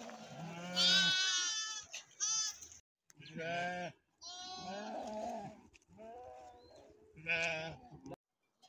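A flock of sheep bleating: about six wavering calls from several animals, one after another, the loudest about a second in.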